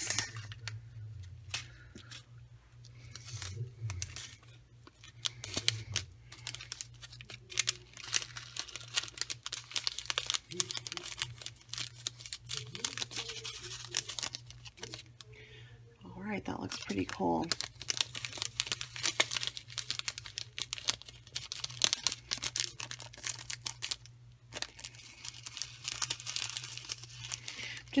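Crinkling and rustling of plastic packaging as a small zip-top packet of metal bottle-cap sequins is opened and the sequins are handled in a clear plastic sleeve. The sound is a continuous run of small crackles and clicks.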